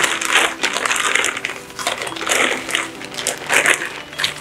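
Clear plastic wrapping crinkling and rustling in repeated bursts as it is pulled open and handled around a tripod.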